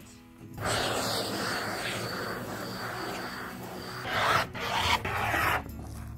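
Cotton fabric being rubbed and smoothed flat across a table by hand, a dry rasping swish that runs on and grows louder for a moment about four seconds in.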